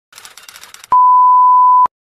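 A single steady electronic beep at about 1 kHz, lasting about a second and cutting off sharply, preceded by a faint pulsing hiss.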